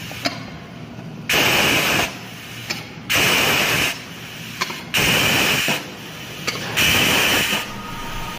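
Compressed air hissing in four short bursts, about two seconds apart, from a pneumatic press working on a stack of small rubber tyres, with a short click between bursts.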